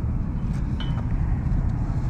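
Wind buffeting the microphone: a steady low rumble, with a faint short high tone about a second in.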